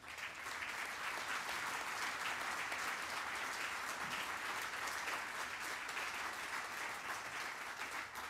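Audience applauding steadily, rising quickly at the start and fading out near the end.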